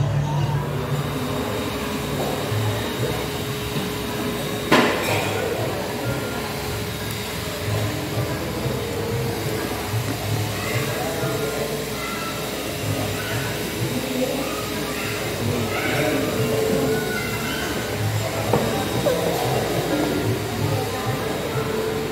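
Indistinct voices and music running together in the background, with a single sharp knock about five seconds in.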